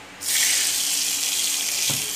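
Hot tempering oil poured from a pan onto a bowl of wet coriander paste, setting off a sudden, loud, steady sizzle. A brief knock near the end.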